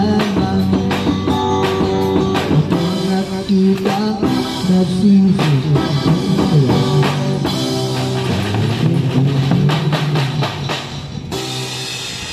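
Drum kit and electric guitar playing together live: a steady beat on snare, bass drum and cymbals under a guitar melody coming through a small portable amplifier. The music eases off a little near the end.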